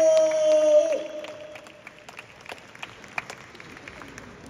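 Scattered audience clapping after a fighter is introduced, following the tail of the ring announcer's drawn-out call, which holds one long note and drops off about a second in.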